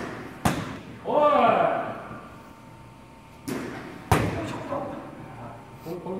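Baseball bat striking practice balls in an indoor batting cage: three sharp hits, about half a second in and then two more close together around three and a half and four seconds.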